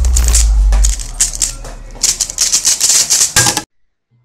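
Logo intro sound effect: a deep bass rumble that drops away about a second in, then a fast rattling clatter of clicks that cuts off suddenly shortly before the end.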